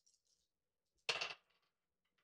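A handful of dice clattering into a wooden dice tray for a roll, one brief clatter about a second in.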